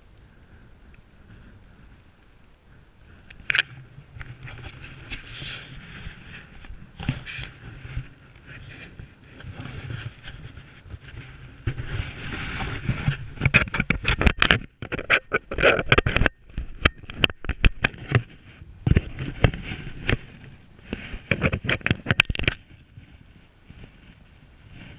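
Skis scraping over snow during a downhill run, growing rougher from about halfway with a fast run of sharp clicks and knocks, then dropping away near the end.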